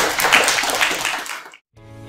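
Audience applauding, cut off suddenly about three-quarters of the way in. After a moment of silence, gentle instrumental outro music with sustained tones begins.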